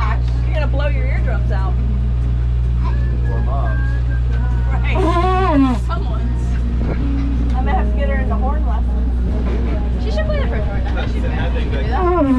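Sailboat's inboard engine running with a steady low drone while the boat motors along, with people's voices and laughter over it, loudest about five seconds in.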